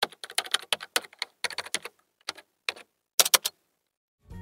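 Computer keyboard typing sound effect: a quick, irregular run of key clicks for about three and a half seconds, with a brief pause about two seconds in and a few louder clicks near the end.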